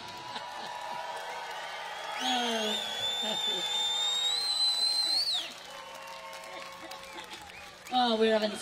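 Concert audience cheering and applauding after a song ends, with scattered shouts. A long, high, slightly rising whistle sounds over the crowd from about two seconds in and falls off after about three seconds.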